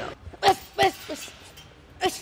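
A one-two combination landing on a hanging teardrop punching bag: two sharp hits about a third of a second apart, each with a short grunt, then a lighter third hit.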